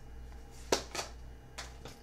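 Tarot cards being handled and drawn off the deck: a sharp card snap about three quarters of a second in, a second one a moment later, then two fainter flicks.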